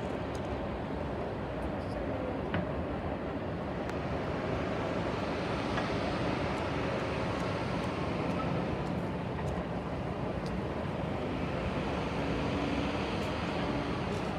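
Steady rumble of a BNSF freight train rolling past at a distance, with no horn.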